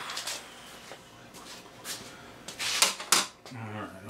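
Light metallic clicks of hand tools being handled at a lower-unit pressure-test fitting, with a louder clattering scrape of metal on metal about three seconds in.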